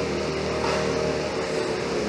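An engine running steadily, a constant low hum.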